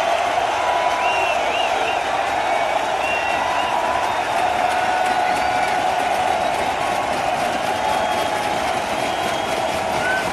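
Large arena crowd cheering and applauding between songs at a rock concert, a steady wash of noise with shrill whistles rising and falling over it.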